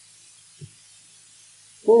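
A short pause in a man's lecture with a faint steady hiss, broken by one brief soft low sound just over half a second in; his speech resumes near the end.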